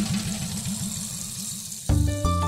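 Dramatic TV background score: a low pulsing drone, about seven pulses a second, with a high hiss above it. Near the end a loud music hit breaks in with heavy drum strokes and held tones.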